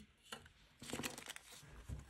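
Faint crinkling and rustling of polymer banknotes as a small stack is picked up and handled, with a short run of crisp rustles around the middle and a soft thump near the end.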